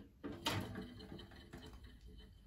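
A single sharp plastic knock about half a second in, as a clear plastic hamster wheel is set down on a plastic cage base, followed by faint handling sounds.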